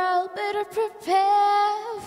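A young girl's solo singing voice: a few short sung notes, then one long held note from about a second in.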